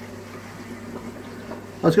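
Steady low hum with a faint hiss from running aquarium equipment, such as filters and air pumps. A man starts speaking near the end.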